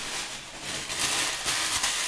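Paper or plastic packaging rustling and crinkling as it is handled while a garment is unwrapped, an even, hissy rustle with a few small crackles.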